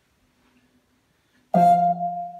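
A loud musical chime from the Fire TV Stick, played through the monitor's built-in speakers, starting suddenly about a second and a half in and dying away just after: the remote has paired and the setup screen moves on.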